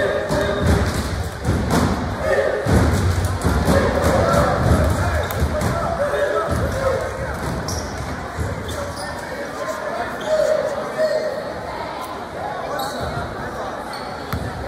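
A basketball bouncing repeatedly on a gym floor, a player dribbling at the free-throw line, over the chatter of voices in a large gym.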